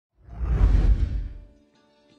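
A whoosh sound effect on an animated intro graphic swells up with a deep low rumble and fades out over about a second. Faint music begins near the end.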